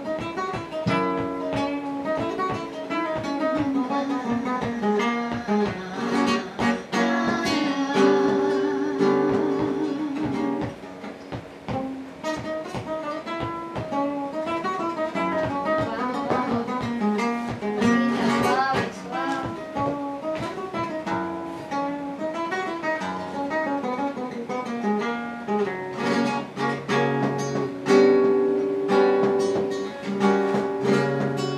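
Flamenco guitar playing, nylon strings plucked and strummed throughout. A woman's voice sings a held, wavering line about eight to ten seconds in.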